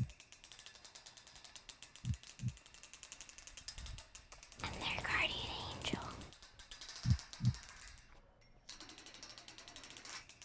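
Trailer sound design: rapid, even mechanical ticking like clockwork. Low double thuds come three times, at the start, about two seconds in and about seven seconds in, and a short swell of breathy noise with a high warbling sound rises and fades about five seconds in.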